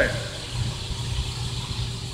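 Steady low rumble of room background noise with a faint, even hum running through it, during a pause in a man's speech. The tail of a spoken word is heard right at the start.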